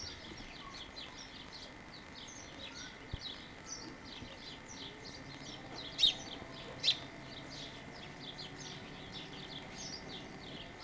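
Small songbirds chirping steadily in quick, short, high notes, with two louder, sharper chirps about six and seven seconds in.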